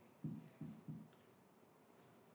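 Faint felt-tip marker strokes on a whiteboard: three short soft rubs and one light click within the first second.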